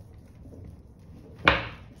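Faint rubbing of a metal spoon burnishing paper over an inked lino block, then a single sharp knock about one and a half seconds in.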